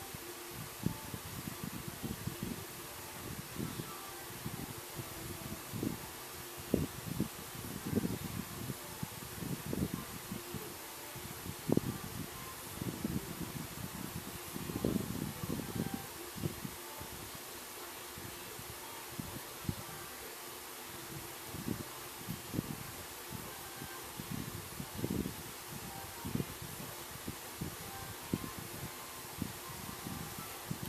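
Yarn strands and hands rustling as the strands are braided, with irregular soft dull bumps over a steady faint hiss.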